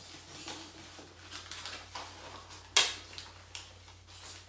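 Rustling and crinkling of packing material as plants are lifted out of a cardboard shipping box, with scattered small clicks and one sharp snap about three-quarters of the way through.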